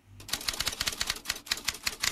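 Typing sound effect: a rapid run of key clicks.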